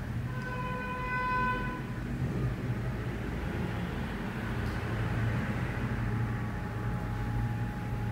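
A single steady pitched tone, like a horn, sounds for about a second and a half just after the start, over a steady low hum.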